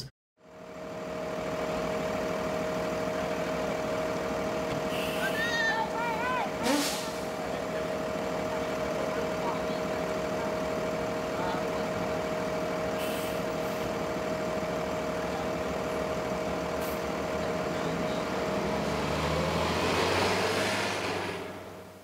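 City bus idling at a curb stop with a steady whine, with a short hiss partway through, then its engine rising in pitch near the end as it pulls away.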